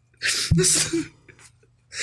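A man laughing hard and breathlessly: a sharp, hissing gasp about half a second in, followed by a few short high-pitched squeaks, with another gasp starting near the end.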